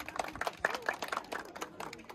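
Scattered hand clapping from a small group of people, with a few voices mixed in.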